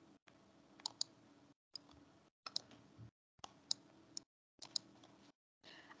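Faint computer mouse clicks, about a dozen, irregular and some in quick pairs, as slides are clicked through. The line cuts out to dead silence several times between them.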